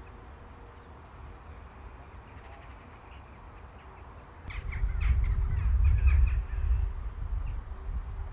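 Crows cawing, mostly in the second half, over a low rumble that starts about halfway through.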